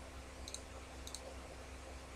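A few faint computer mouse clicks in the first second or so, over a steady low electrical hum.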